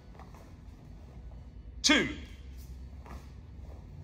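A man calls out a sharp count, "two", about two seconds in, over a steady low hum in a large room. Around it are a few faint scuffs of bare feet and uniforms on the floor mats as two people step forward and block.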